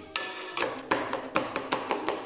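A kitchen utensil knocking against a metal pot while mashed potatoes are beaten and mixed: a quick, irregular run of sharp knocks.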